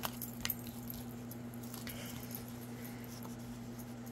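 A steady low electrical hum, with a few faint clicks in the first half-second.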